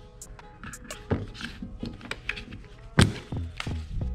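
A magazine is pushed into the grip of a Glock 43X pistol and seats with one sharp knock about three seconds in, after a softer knock about a second in.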